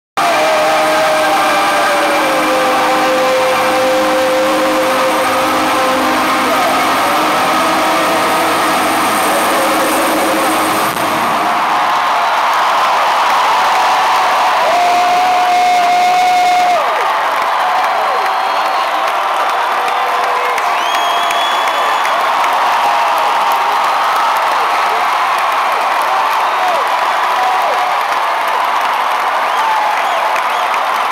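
Live rock concert heard from within an arena crowd: the band's music with singing for the first several seconds, then the bass falls away about 11 seconds in, leaving sung voices and crowd cheering.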